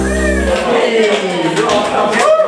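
A live band's final chord rings and cuts off about half a second in. A voice then calls out in a long, high cry that wavers and falls in pitch.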